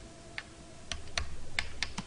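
Five light, scattered clicks from a computer keyboard and mouse being worked as frames are stepped through.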